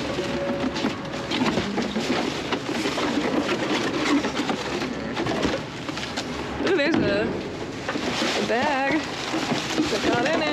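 Cardboard boxes and plastic bags rustling, scraping and crinkling as gloved hands shift trash around in a dumpster. Brief voice sounds come about seven seconds in and again near the end.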